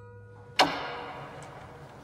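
A sharp percussive hit from the trailer's score, about half a second in, ringing on in a long reverberant tail as a held music tone fades under it, with a faint tick near the middle.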